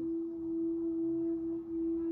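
Brass singing bowl ringing in one steady, sustained tone as a mallet is circled around its rim, the loudness wavering slowly.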